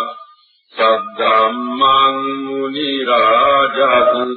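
A Buddhist monk's voice chanting in long, held, melodic lines, the notes sustained with a short pause about half a second in.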